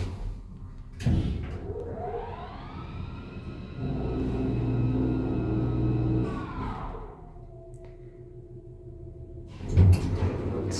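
Traction elevator of a 1978 SÛR SuperSûr making a one-floor run down: a thump about a second in, then the hoist motor's whine rising in pitch as the car speeds up, holding steady for a few seconds, and falling away to a lower hum as it slows for the landing, with a low rumble underneath. A second, louder thump comes near the end as the car stops.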